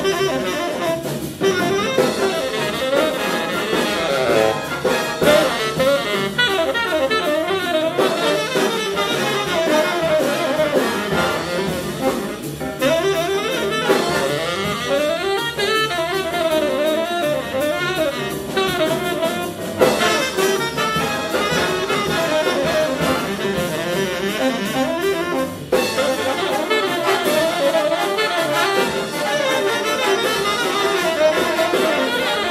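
Jazz big band playing a fast swing number live: a saxophone leads over riffs from the trumpet and trombone sections, with piano, double bass and drum kit keeping time.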